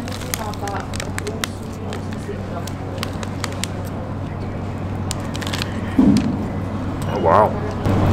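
Someone chewing a bite of chicken pie, with the plastic bag around it crinkling in scattered sharp clicks over a steady low hum. A low thump about six seconds in, then a short hummed voice sound.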